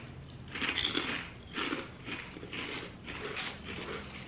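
Chewing a popped potato chip: a few short, crisp crunches about a second apart as it is bitten and chewed.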